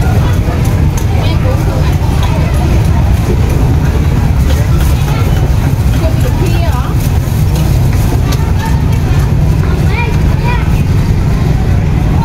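Street ambience: a steady low rumble of traffic with people's voices in the background and a few light clicks.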